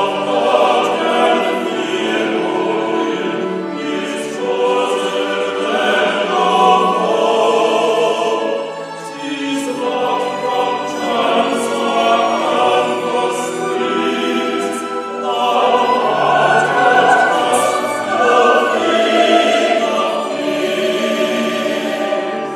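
A classical vocal trio singing in an operatic style with a choir and orchestra, live in a large concert hall, heard from the audience.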